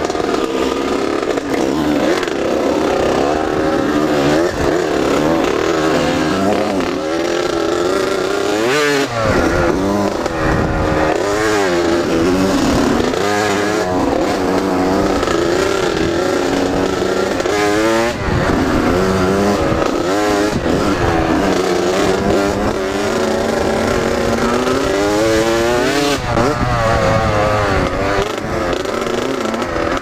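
Two-stroke Kawasaki KX dirt bike engine being ridden, revving up and dropping back again and again as the throttle opens and closes.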